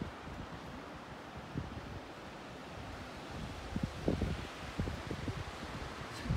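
Wind blowing over the microphone as a steady rush. Low gusts buffet it harder from about three and a half seconds in.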